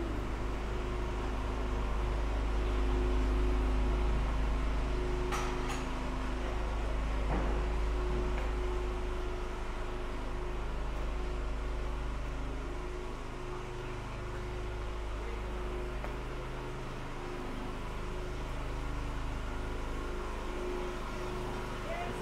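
A motor vehicle engine running steadily nearby: a low rumble with a constant hum, as of an idling car.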